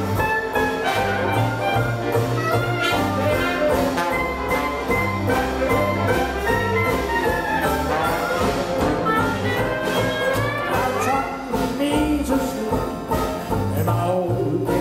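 Live traditional New Orleans-style jazz band playing ensemble: clarinet and derby-muted cornet carry the melody with trombone, over a steady beat of banjo, piano, string bass and drums.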